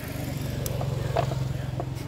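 A motor vehicle's engine running nearby, a steady low hum that swells a little in the middle, with a few short sharp clicks of scissors snipping a plastic jar.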